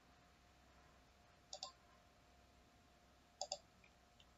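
Two computer mouse clicks about two seconds apart, each a quick press-and-release double tick, over a faint steady hum.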